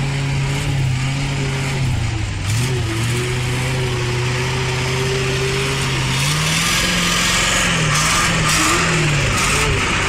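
Engine of a heavy log-laden six-wheel truck pulling through deep mud, holding a steady note that sags briefly about two seconds in, then rises and wavers from about six seconds in as it works harder under load.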